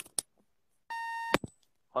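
A short electronic beep from a phone, one steady tone of about half a second near the middle, with a few light clicks before it and a sharp click as it ends.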